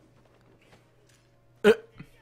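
A man lets out one brief, sharp "uh" near the end; otherwise there is only a faint steady hum.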